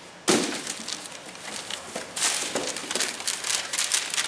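Sheets of paper rustling and crackling as they are handled and unfolded, starting with a sudden loud rustle just after the beginning.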